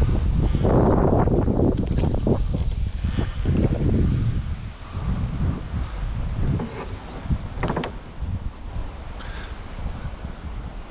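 Wind buffeting the microphone in a constant low rumble, with water splashing and sloshing around a small plastic boat during the first few seconds.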